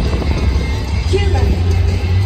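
Stadium public-address sound: an announcer's voice over music, carried across the ballpark, with a deep low rumble underneath.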